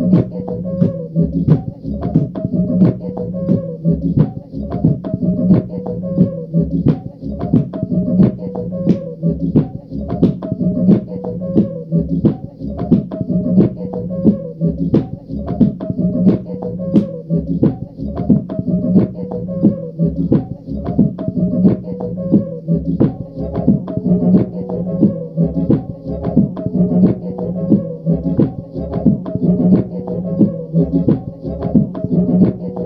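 A homemade looped beat from a pad controller: sharp percussive hits a couple of times a second repeating over a steady low, buzzing drone.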